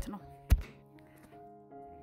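A single sharp thunk about half a second in, over soft background music.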